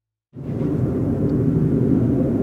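Jet aircraft flying overhead: a steady low rumble of jet noise that cuts in suddenly about a third of a second in.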